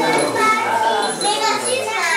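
A group of young children's voices at once, chattering and calling out together, loud and overlapping.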